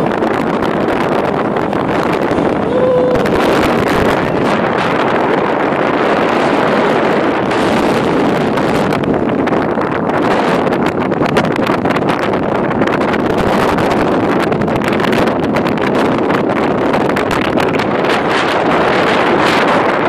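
Wind rushing over the phone's microphone on a moving motorcycle, a loud steady rush with the bike's road noise underneath. A short steady tone sounds once, about three seconds in.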